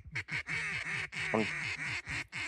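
Ducks quacking in a quick, even run of short notes, several a second, with one louder note just past the middle.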